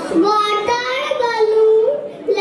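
Young children singing into stage microphones, a sung line with long held notes.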